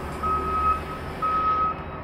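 Back-up alarm of a reversing construction vehicle, a single-pitched beep sounding twice, about half a second each and once a second.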